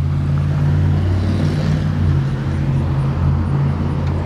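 Steady low rumble of road traffic and vehicles, an even drone with no sudden knocks.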